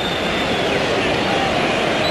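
Steady stadium crowd noise from the football crowd, a continuous even wash of many voices.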